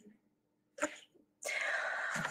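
Breath noise on a video-call microphone: a short sniff-like puff a little under a second in, then a steady breathy hiss from about halfway through as the speaker draws breath to go on.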